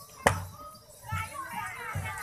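Children's voices shouting and calling out, growing busier from about a second in, with one loud sharp clack shortly after the start and low thumps about once a second.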